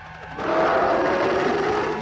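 A cartoon dinosaur's roar: a loud, rough sound effect that starts about half a second in and lasts roughly a second and a half.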